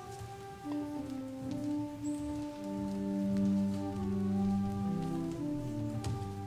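Instrumental music: slow chords of long, steady held notes that enter softly and grow louder about halfway through.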